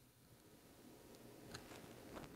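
Near silence: quiet room tone, with a few faint clicks near the end.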